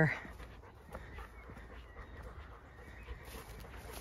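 A dog panting faintly.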